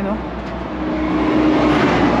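A vehicle passing on the highway: its tyre and engine noise swells from about a second in and peaks near the end.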